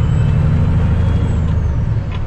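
The Cummins ISX diesel engine of a 2008 Kenworth W900L runs steadily, heard from inside the cab as a loud low drone with a faint hiss above it, while the truck moves slowly in traffic.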